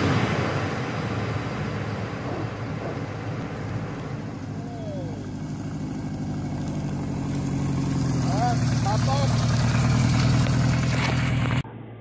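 Kawasaki KZ1000 motorcycle's air-cooled inline-four engine running as the bike approaches, getting steadily louder through the second half. The sound cuts off suddenly just before the end.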